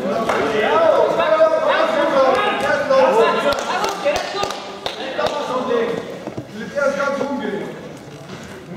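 Several voices calling out at once, loud and overlapping, with a few sharp thuds of wrestlers' feet and bodies on the mat between about three and a half and five seconds in.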